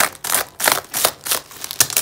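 Bubble-wrap packaging crinkling in short rustles, about three a second, as it is pulled and cut open by hand.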